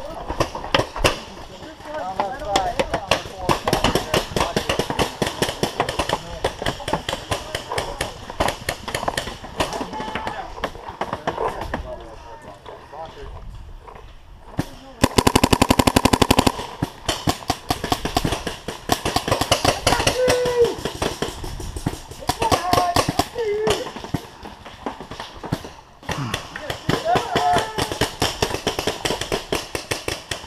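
Paintball markers firing in rapid strings of sharp pops throughout, with one long, very fast, loud string about halfway through from a close marker, a Planet Eclipse Ego LV1 electronic marker.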